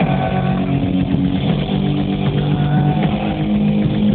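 A motorcycle engine revving on stage at a loud rock concert, its pitch stepping up and down.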